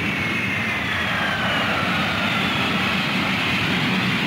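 Cartoon spacecraft engine sound effect: a steady jet-like rushing roar with a high whine that slowly falls in pitch.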